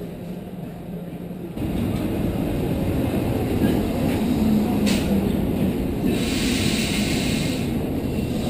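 Berlin S-Bahn electric train at a station platform, a steady low rumble that gets suddenly louder about a second and a half in. A hiss lasting about two seconds comes near the end.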